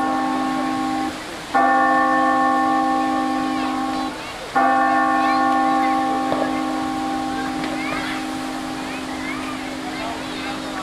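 Bell-like chime chords in music, probably accompanying the fountain show: a held chord breaks off about a second in, then a chord is struck at about a second and a half and again at about four and a half seconds, the last one fading slowly.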